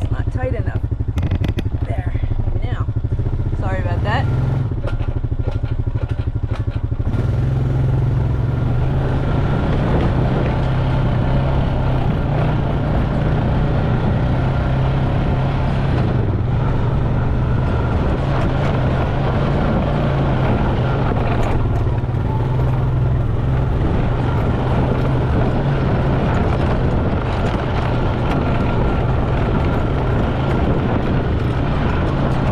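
ATV engine running steadily as it is ridden along a dirt trail, pulling harder and louder from about seven seconds in.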